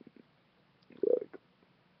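A pause in a man's talk, nearly silent except for one short, low vocal sound about a second in.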